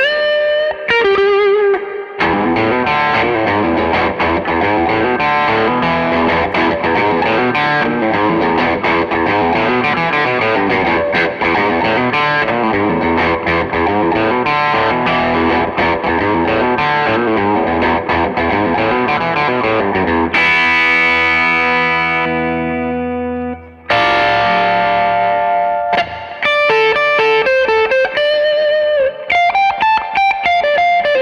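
Electric guitar played through a Tone City Sweet Cream overdrive into a solid-state amp, a lightly overdriven bluesy lead. A long run of notes gives way to a held chord ringing out and fading about two-thirds of the way in, then more lead notes with string bends near the end.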